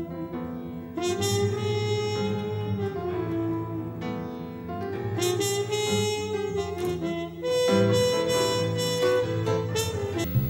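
Live jazz: a trumpet played through a harmon mute holds long notes over double bass and reedy accordion chords. The music swells at about a second in and again near the end.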